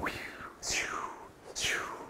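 Two falling whooshes, about a second apart, in time with arms swung back and forth across the body.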